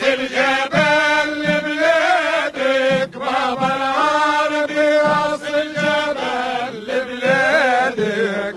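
Tunisian sulamiya Sufi chant: men's voices singing an ornamented, wavering melody over a frame drum (bendir) beating steadily about twice a second.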